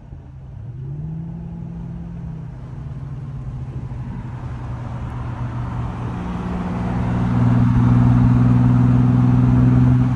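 Infiniti G37's 3.7-litre V6 through an ISR single-exit exhaust with resonator and stock cats, pulling up briefly about half a second in, then cruising at a steady low drone. The drone gets louder through the second half as the car comes alongside.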